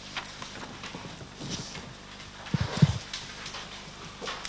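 A few soft knocks, then a cluster of heavy low thuds about two and a half seconds in, close to the microphones: handling noise at a witness stand as something is knocked against the desk or microphone stand.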